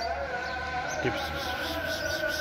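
A person calls a cat with one short word about a second in, over a steady drone of several held tones.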